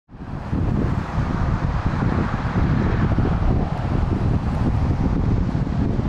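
Steady wind noise buffeting the microphone over a vehicle's running noise, fading in over the first half second.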